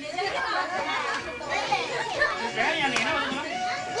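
Several children and adults talking and calling out over one another: busy, overlapping party chatter.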